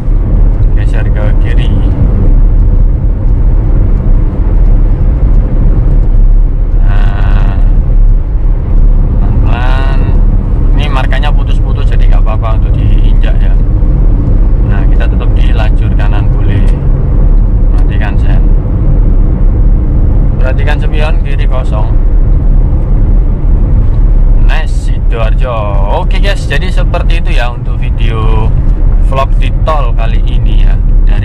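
Steady cabin drone of a Suzuki Karimun Wagon R's 1.0-litre three-cylinder engine and its tyres at highway cruising speed, a deep, even rumble. Talking comes and goes over it.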